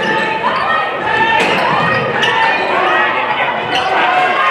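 Basketball bouncing on a hardwood gym court during play, with three sharp bounces in the large hall, over voices.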